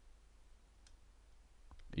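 Near silence with a single faint computer mouse click a little under a second in.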